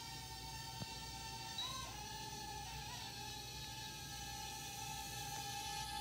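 Holy Stone HS190 mini quadcopter hovering, its four tiny motors and propellers giving a steady high-pitched whine. The pitch shifts briefly twice, a couple of seconds in and again about a second later, as the throttle is nudged.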